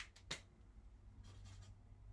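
Near silence, with two faint clicks near the start and a soft, brief scratch a little past halfway: a felt-tip marker being handled and set against a paper chart.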